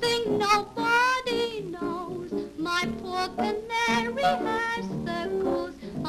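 A woman singing a popular dance-band-era song in a light, wavery voice with strong vibrato, accompanied by piano.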